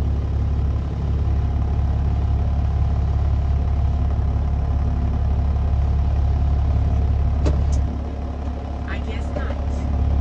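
Dump truck engine idling with a steady low hum, heard from inside the cab. Two sharp clicks about seven and a half seconds in.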